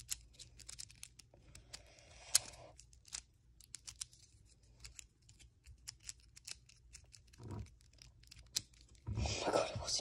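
Miniature GAN 3x3 speed cube being turned by hand: a run of quick, irregular plastic clicks as the layers turn, with a louder burst of turning and handling near the end.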